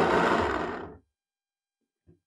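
Countertop blender motor running briefly, churning a thick green herb paste, then stopping suddenly about a second in.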